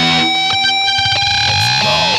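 Distorted electric guitar (an LTD played through a Boss ME-80 multi-effects processor) holding one long sustained note while the drums drop out.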